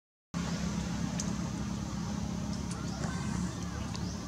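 A brief drop to silence at the very start, then a steady low engine-like hum with faint murmuring voices in the background.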